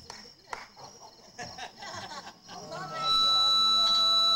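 Scattered voices, then about three seconds in a loud, steady, high-pitched squeal of amplifier feedback: a couple of pure tones held level without wavering.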